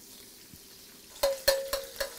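An egg frying in hot oil in a wok with a quiet sizzle. About a second in, a metal spatula knocks twice against the wok, which rings briefly after each knock.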